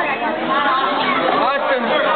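Several people's voices talking and calling out at once, an overlapping chatter with no single clear speaker.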